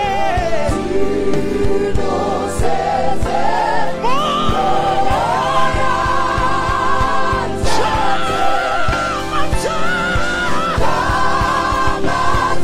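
Live gospel praise singing: several voices singing together, holding long notes, over a band with drums and bass guitar keeping a steady beat.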